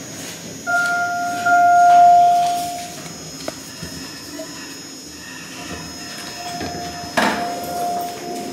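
Elevator arrival chime: a single electronic tone held for about two seconds, starting about a second in and fading out. Later a fainter tone and a short knock come as the elevator doors open, near the end.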